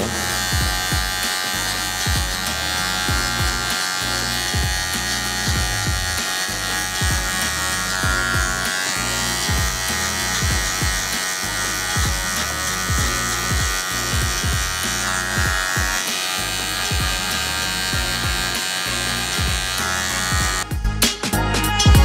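Electric hair clipper buzzing steadily as it is worked slowly upward to blend a skin fade, over background music with a steady beat of about two a second. Near the end the clipper hum drops out and the music gets louder.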